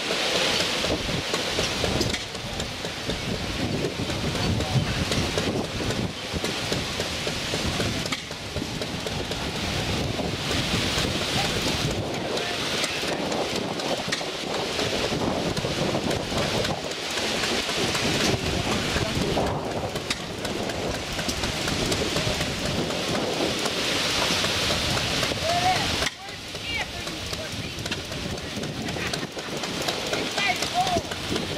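Wind buffeting the microphone, a steady rushing noise that rises and falls in gusts, with faint voices in the background.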